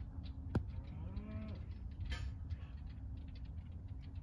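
Quiet outdoor background with a single sharp click about half a second in, then one short, faint animal call that rises and falls in pitch about a second in.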